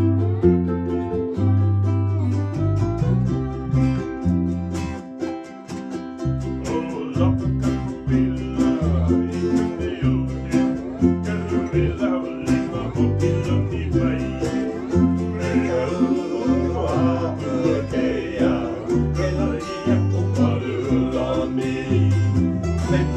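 Hawaiian-style string band playing: electric bass plucking steady low notes under strummed ukuleles and 12-string guitar, with a gliding melody on top from about six seconds in.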